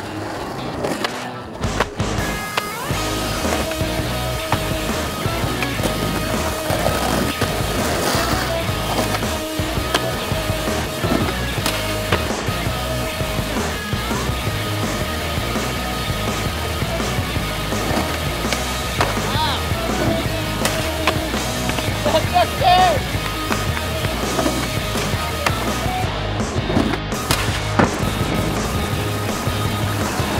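Skateboard wheels rolling on rough asphalt, with sharp clacks from the board popping and landing tricks, mixed under backing music with a steady beat.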